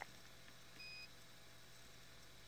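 A single short, high electronic beep about a second in, over near-silent background hum, with a soft click at the very start.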